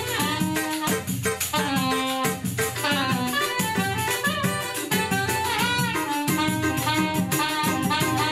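Live Brazilian choro ensemble playing: cavaquinho strumming with pandeiro and tantan keeping a steady percussion pulse under a saxophone melody.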